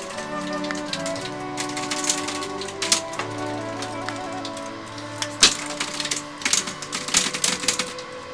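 Computer keyboard being typed on in quick, irregular runs of clicks, loudest about five and a half seconds in and again over the last two seconds or so. Background music with sustained notes underneath.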